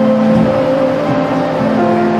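Live worship music from a small band: acoustic guitar with singers holding long, steady notes that change pitch about every second or so.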